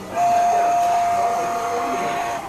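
Recorded steam whistle from a sound-equipped O gauge model steam locomotive: one long, steady blast on a single pitch, starting a moment in and lasting about two seconds.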